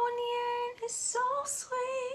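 A young woman singing a gospel song solo, holding one long steady note for most of the first second, then a short phrase with sharp hissy consonants. The sound comes through a video call.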